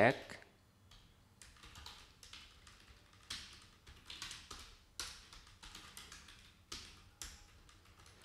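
Computer keyboard being typed on: quiet, irregular keystrokes in short runs with brief pauses.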